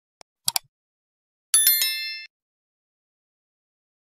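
Sound effects of an animated subscribe button: a quick double mouse click, then about a second later a bright bell-like chime of several ringing tones that lasts under a second and cuts off.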